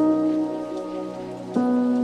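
Lo-fi hip-hop music: sustained keyboard-like chords, with a new chord entering about a second and a half in, over a rain-like crackling hiss.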